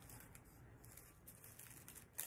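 Near silence: room tone.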